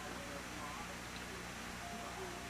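Faint, indistinct voices in the distance over a steady background hiss, with a thin steady tone coming in near the end.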